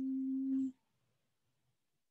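A person humming one steady held note, which cuts off sharply under a second in, leaving near silence.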